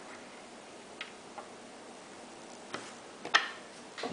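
Bullets and small steel penetrator cores being set down and lined up on a wooden table: four light clicks and taps, the sharpest about three and a half seconds in.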